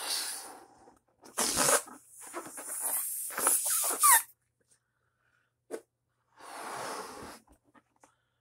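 Breaths blown into a 12-inch latex heart balloon to inflate it, in several puffs with pauses between. There is a short rubbery squeak from the stretched latex near the middle, and a small click later.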